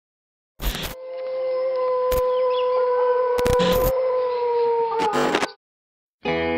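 A single long dog-like howl, held on one steady pitch for about four seconds and dropping slightly at the end. Several sharp clicks or thumps cut across it, the first just before it starts.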